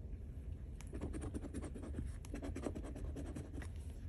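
A coin scraping the coating off a scratch-off lottery ticket in a quick run of short strokes, starting about a second in and stopping just before the end.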